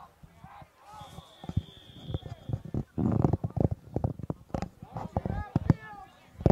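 Field sounds of a lacrosse game in play: a brief steady high whistle early on, then a dense run of sharp knocks and thumps, loudest about halfway through, with distant shouting voices near the end.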